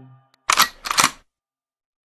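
Two camera-shutter clicks, a sound effect in the edit, about half a second apart, just after the tail of the music dies away.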